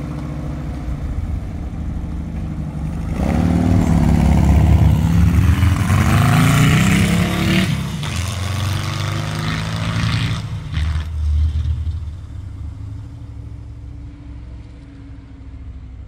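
1965 VW dune buggy's air-cooled flat-four engine idling, then revving up hard about three seconds in as the buggy pulls away, climbing in pitch through the gears and fading as it drives off.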